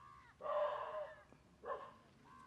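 An animal calling: one long pitched cry about half a second in, falling slightly at the end, then a shorter call near the end.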